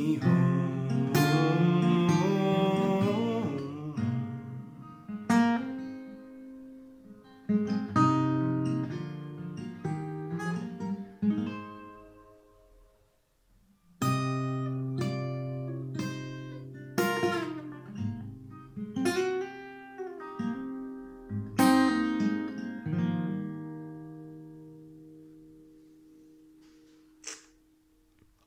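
Nimskov L1 custom acoustic guitar played solo: picked notes and chords of the song's closing instrumental bars. The playing pauses for a moment about halfway through, resumes, and the final chord rings out and fades away.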